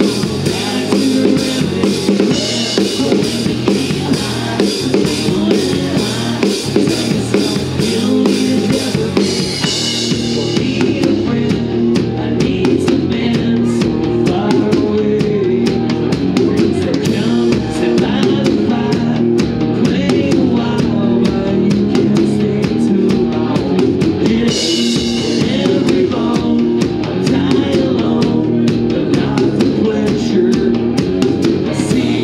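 Live rock band playing, with an acoustic drum kit hit hard: kick, snare and cymbals over the band's guitar and bass. The bright cymbal crashes thin out about ten seconds in and come back strongly near the end.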